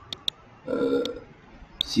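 Two quick computer mouse clicks, then a short wordless vocal sound, low and brief, from a man at the microphone, with the start of a spoken word near the end.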